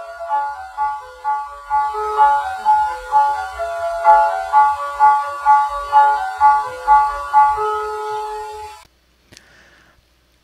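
Computer-rendered piano music generated by OpenAI's MuseNet as a continuation of an uploaded MIDI intro: a melody of short notes over chords, about two to three notes a second. It stops abruptly about nine seconds in as playback ends.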